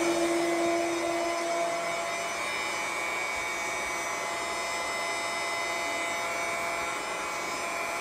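Electric pump of a small maple-sap reverse-osmosis system running steadily, a hiss with several high, steady whining tones; its lowest tone fades out about a second and a half in.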